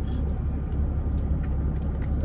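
Steady low rumble of a car idling, heard from inside the cabin, with a few faint clicks in the second half.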